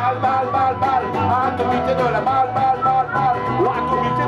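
Live acoustic rock band playing, led by guitar, with a single sung word 'bal' near the start.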